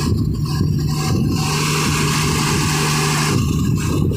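Truck engine running with a steady low hum. From about a second and a half in, a rushing hiss rises over it for about two seconds, then falls away.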